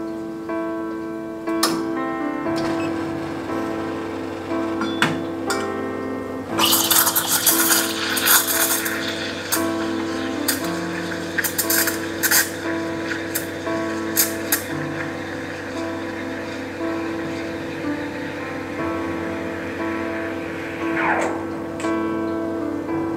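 Espresso machine steam wand frothing milk in a stainless pitcher: a hiss with crackling, tearing bursts for a few seconds from about six seconds in as air is drawn into the milk, then a steadier hiss ending near the end. Soft background music plays throughout and is the loudest sound.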